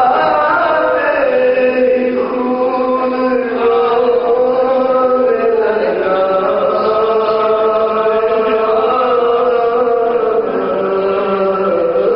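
A man's voice chanting a marsiya, an Urdu elegy, in slow melismatic phrases. He holds long notes for several seconds at a time.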